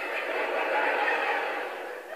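A stand-up comedy audience laughing, swelling to a peak about a second in and then easing off.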